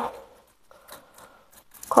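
Faint clicks and light rustling of hand pruning shears being handled among houseplant leaves, after the last of a spoken word dies away.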